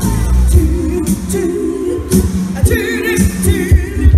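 Live pop music: a woman singing into a microphone over a band, with drum strokes and bass underneath; about three seconds in she holds a wavering note.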